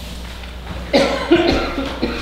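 A person coughing once, a sudden loud burst about a second in that lasts under a second, over a steady low room hum.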